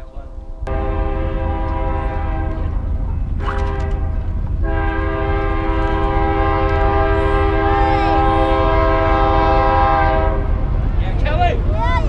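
Train air horn sounding a chord of several pitches: a blast of about two and a half seconds, then after a short break a longer blast of about six seconds, over a steady low rumble.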